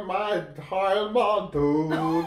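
A man's voice singing unaccompanied: a short melody of held, steady notes in brief phrases with small gaps between them. He is singing along, by ear, to a Dutch song heard only in his headphones.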